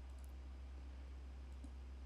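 Quiet room tone with a steady low electrical hum from the recording setup, and one or two faint clicks.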